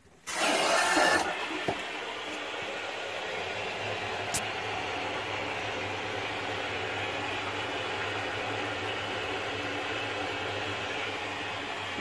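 Water rushing through the supply pipe into an electric water heater tank as the cold-water valve is opened: a sharp hiss for about a second, then a steady rush with a low hum under it.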